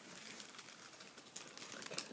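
Faint crinkling and rustling of the plastic and satin wrapping around a ball-jointed doll as it is handled, with a few sharper crinkles in the second half.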